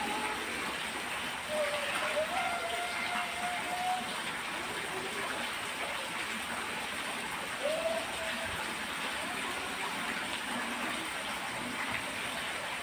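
A voice quietly intoning a few long held notes, one about a second and a half in lasting over two seconds and a shorter one near eight seconds, over a steady hiss.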